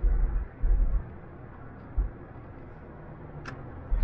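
Steady road noise inside a moving vehicle's cabin. There are a few low thuds in the first second and another about two seconds in, then a single sharp click near the end.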